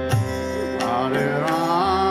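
Kirtan music: a harmonium holds steady chords under a sung chant, while tabla strokes keep the rhythm, the bass drum's low notes sliding in pitch.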